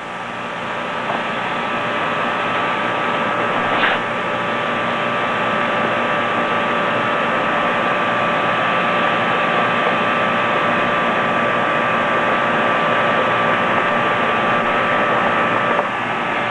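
Propane gas burner hissing steadily as the gas flows, with faint whistling tones in it. A single sharp click comes about four seconds in.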